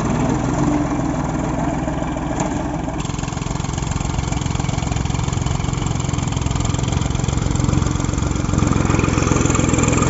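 Escort 335 tractor's diesel engine running, idling steadily at first, then pulling across the field with the hitched seed drill; it gets a little louder near the end.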